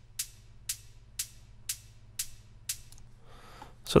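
Closed hi-hat drum sample playing on its own: six crisp ticks about half a second apart, each dying away quickly, over a faint steady low hum. A brief, softer hiss follows near the end.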